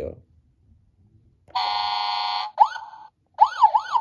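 Road Rippers toy fire truck's electronic sound effects through its small replacement speaker. About a second and a half in, a buzzy horn blast lasts about a second, then a siren wails up and down in quick sweeps.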